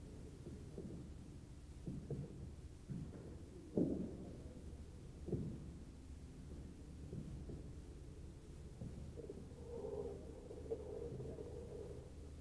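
Low, muffled background rumble of a large indoor hall, with a few soft bumps, the loudest about four seconds in and another about a second later.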